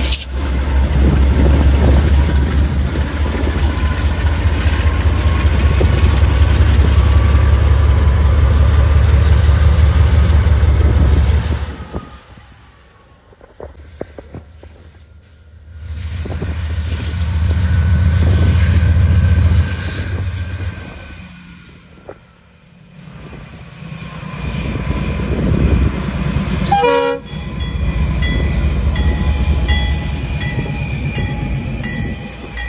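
Diesel-electric locomotives hauling covered hopper cars past close by: a loud, steady low engine rumble that twice drops away to a much quieter passing-train sound and builds back up. There is a short horn-like tone near the end.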